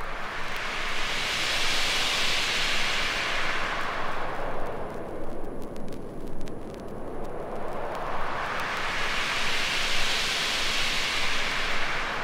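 Whooshing swell of filtered noise in the intro of a 1998 acid hard trance track, brightening to a peak about two seconds in, dulling around six seconds, then brightening again near ten seconds, like a jet passing over.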